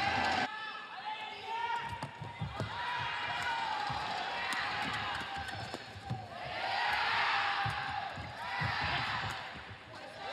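Badminton rally: sharp racket strikes on the shuttlecock and shoes squeaking and thudding on the court floor, over a steady murmur of crowd voices in a large hall. The crowd grows louder from about six and a half seconds in.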